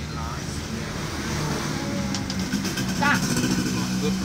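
Brief voices over a low steady hum that grows louder through the middle, with a quick run of light clicks about two seconds in.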